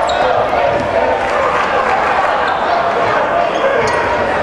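Basketball dribbled on a hardwood court over a steady murmur of arena crowd voices.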